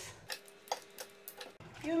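Light, sharp clicks and taps at a saucepan, about six in under two seconds, as white chocolate is added to the hot cream-and-gelatin mix and stirred in.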